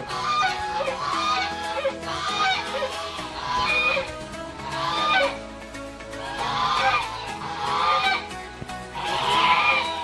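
White domestic geese honking in repeated bursts of calls, over background music.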